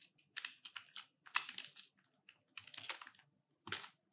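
Faint typing on a computer keyboard: several short runs of key clicks with brief gaps between them, the busiest run about a second and a half in.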